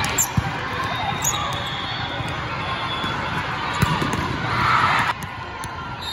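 A volleyball is struck with sharp slaps a few times during a rally, in a large echoing hall full of players' and spectators' voices. Near the end a louder burst of crowd noise cuts off suddenly.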